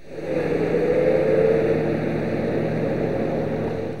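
A car driving along a street: engine and tyre noise that swells in over the first second and then holds steady.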